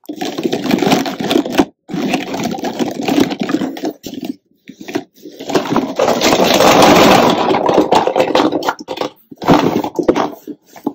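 Dozens of small plastic PocketBac hand-sanitizer bottles clattering and sliding as they are tipped out of a woven storage bin onto a wooden floor. The clatter comes in several bursts, the longest and loudest from about five seconds in.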